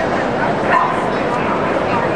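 A dog barks once, about three quarters of a second in, over the steady chatter of a large crowd.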